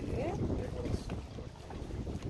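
Wind on the microphone: a steady low noise, with a short bit of voice in the first half second.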